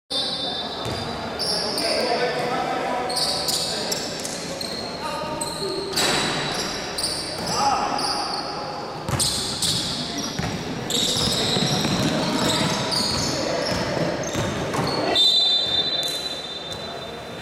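Basketball game in a large, echoing gym: a ball bouncing on the hardwood court and players' voices, with short high-pitched squeaks throughout.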